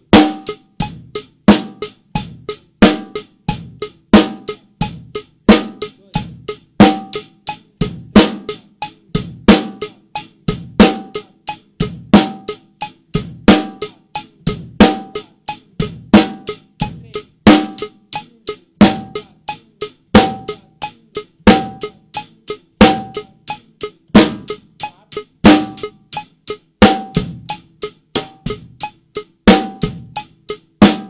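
Acoustic drum kit played in a steady, even groove: hi-hat keeping time, with snare and bass drum strokes. It is a timing exercise that places the bass drum on different beats of the bar. A strong accent comes back about every second and a half.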